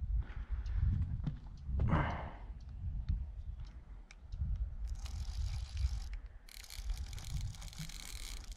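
The small reel of a kids' rod-and-reel combo being cranked in two spells of fast, fine clicking about five seconds in and again near the end, over a low rumble of wind on the microphone. A short rustle comes about two seconds in.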